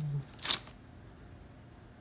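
One quick swish of a paper page being flipped in a thin paperback children's book, about half a second in.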